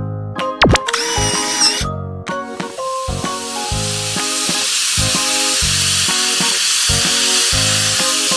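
Cartoon spray-paint sound effect: a steady hiss that starts about two seconds in, over light background music with piano notes. A short click comes near the start.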